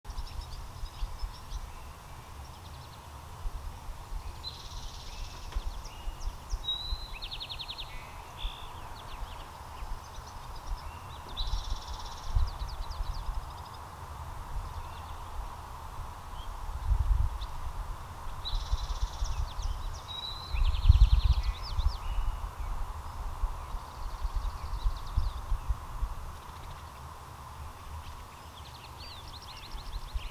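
Outdoor garden ambience: songbirds singing short, quick phrases every few seconds over a low wind rumble on the microphone, which swells in two gusts about two-thirds of the way through.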